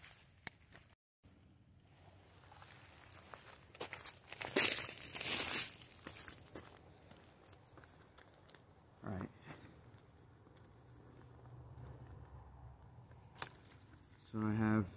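Dry leaves and clothing rustling and crunching as a person moves about and sits down on leaf-covered ground, loudest for a couple of seconds around the middle.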